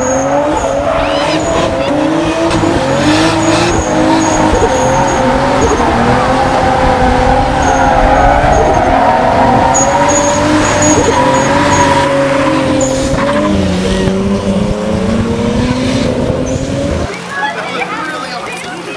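Car engine held at high revs with wavering pitch as the rear tires spin and squeal in a burnout while the car circles. It cuts off suddenly about a second before the end.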